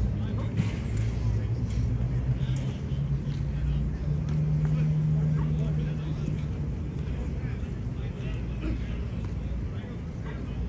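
Indistinct voices in the background over a low, steady mechanical hum, which grows louder for a couple of seconds around the middle.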